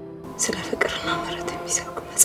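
A woman speaking softly, with sharp hissing sibilants, over sustained keyboard background music.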